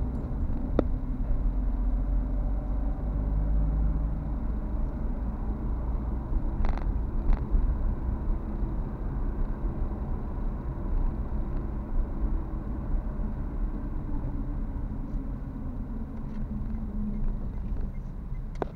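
A car being driven: steady low engine and road rumble, with a couple of brief sharper sounds about seven seconds in.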